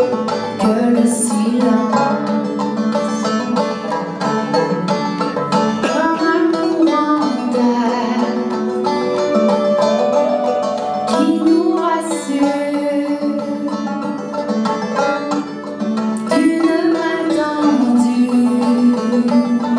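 Live band playing a song: electric bass, drums, keyboards and electric guitar. A sliding melodic phrase rises and falls about every five seconds.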